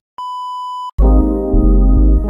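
A steady TV test-card tone, a single beep pitched near 1 kHz, lasting under a second, then loud music with deep bass cuts in about a second in.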